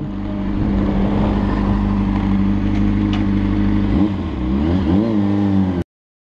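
Sport motorcycle engine heard from the rider's helmet camera, running at a steady low speed, then its pitch rising and falling a few times about four seconds in; the sound cuts off suddenly near the end.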